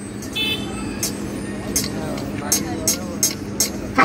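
Indistinct voices and road-traffic noise over a steady low hum, with a few short high-pitched ticks through the second half.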